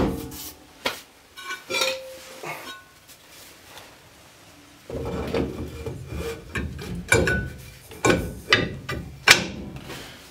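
Brake drum being slid over the rear brake shoes and onto the hub: a few light knocks in the first seconds, then from about halfway a continuous metal-on-metal scraping and rubbing with several sharp knocks as the drum goes on.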